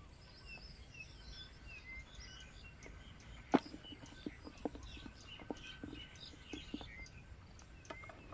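Small birds chirping repeatedly over a faint steady high whine. A sharp click comes about three and a half seconds in, followed by several softer knocks as the cast net is handled.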